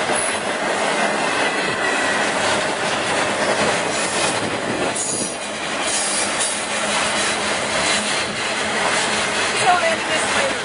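BNSF intermodal freight train rolling past at close range, its flatcars of truck trailers making a steady loud rumble of wheels on rail, with faint wheel squeal at times.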